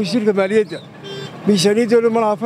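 A man speaking in a loud, raised voice, with a brief pause about a second in.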